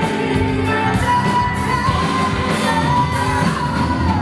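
Live rock band: a woman singing long, held notes into a microphone over electric guitar, bass and a drum kit.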